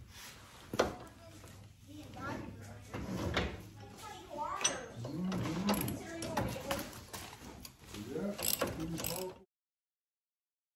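Electric winch put into free-spool and its synthetic rope pulled out by hand, giving slack: a sharp click about a second in, then irregular rubbing, rattling clicks and short squeaks as the rope pays off the drum. The sound cuts off suddenly near the end.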